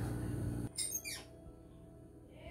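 A low steady background hum that cuts off abruptly just under a second in. It is followed by a quick high whistle-like sound falling steeply in pitch, then a faint hush.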